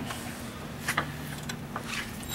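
A few faint clicks and knocks of handling at a workbench as a multimeter is picked up, over a steady low electrical hum.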